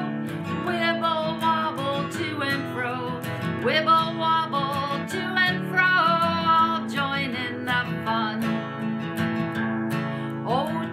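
Acoustic guitar strummed in steady chords, with a woman singing a children's song over it.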